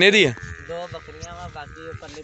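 A goat bleating: a loud, quavering call that falls in pitch and breaks off just after the start, followed by much softer calling.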